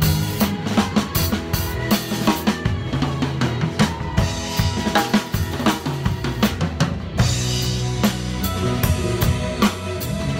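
Drum kit played hard and continuously, snare, bass drum and cymbal strokes struck with light-up drumsticks, over the pitched backing of a band track as in a drum cover.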